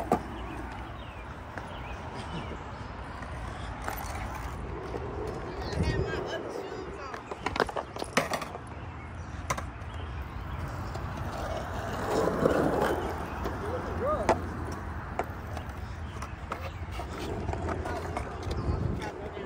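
Skateboard wheels rolling on a concrete skate bowl with a steady low rumble, and a few sharp clacks from the board scattered through, several close together around the middle.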